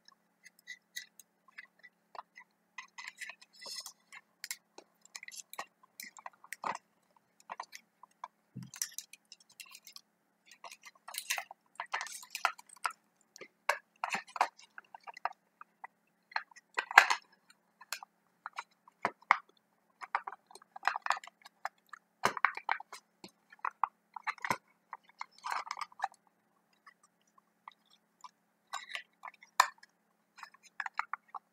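Handling noise from a small plastic meter casing and its wires being worked by hand: irregular clicks, taps and scrapes with short pauses, busiest in the middle stretch.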